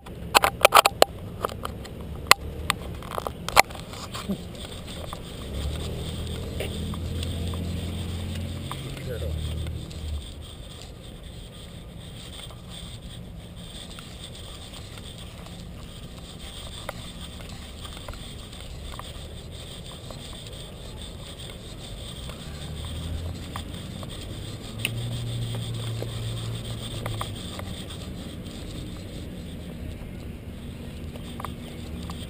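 Handling noise from a camera strapped to a walking dog's harness: sharp clicks and knocks in the first few seconds, then a steady rustle. A low hum swells twice, around six seconds in and again around twenty-five seconds in.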